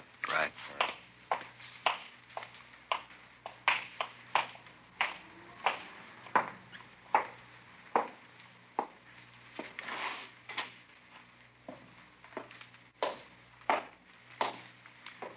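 Footsteps sound effect from an old radio drama: a person walking on a hard surface, one sharp step about every half second to second, over a faint steady hum.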